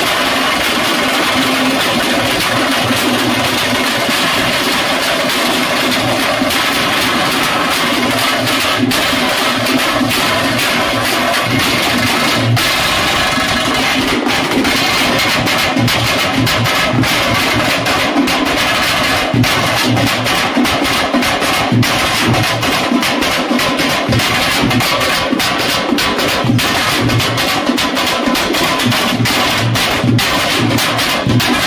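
Veeragase folk-dance accompaniment: a large drum beaten with a stick under a held, droning melody line, the drum strokes growing quicker and denser from about eight seconds in.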